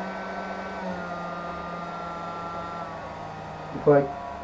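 Hair-dryer fan motor running steadily with a whine, its speed set by PWM from an Arduino through a MOSFET; the pitch drops slightly about a second in.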